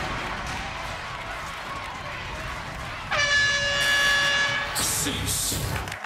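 Arena end-of-fight horn sounding as the battle countdown runs out: one steady, flat-pitched blast about three seconds in, lasting about a second and a half, over a steady bed of arena noise.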